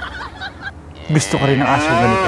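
A loud, drawn-out vocal call with a strong, wavering pitch, lasting a little over a second and starting about a second in.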